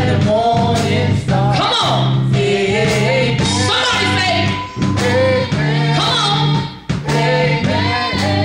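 A woman singing a gospel song into a microphone over instrumental accompaniment with sustained low bass notes, with short breaks between phrases.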